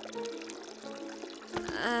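Coffee pouring from a pot into a mug, over background music.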